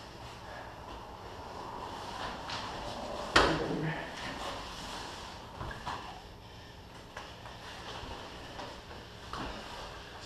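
Two grapplers' bodies shifting, sliding and scuffing on a foam mat during a jiu-jitsu drill. A sharp thump of a body or limb hitting the mat comes a little over three seconds in and is the loudest sound, with a few softer knocks later.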